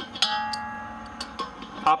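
A metal wrench clinks against the propane tank's valve fitting, and the metal rings out like a bell, dying away over about a second and a half, with a few lighter clicks after.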